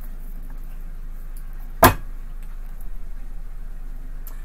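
A tarot deck being shuffled by hand: one sharp snap of the cards just under two seconds in, followed by a few faint light ticks, over a steady low hum.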